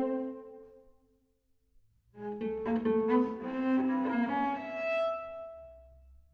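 Solo cello bowing a contemporary piece: a phrase dies away within the first second, then after a pause of about a second a new phrase begins and climbs to a high held note that fades out near the end.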